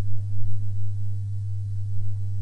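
A steady low-pitched electrical hum, one unchanging tone with fainter overtones over a light hiss, of the kind that mains interference puts into a recording.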